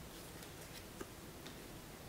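A few faint, soft ticks, the clearest about a second in, as oracle cards are laid down onto a spread of cards on a cloth-covered table.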